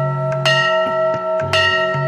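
A large hanging brass temple bell rung by hand, struck twice about a second apart, each strike ringing on with long clear tones that overlap the ringing of the strike before.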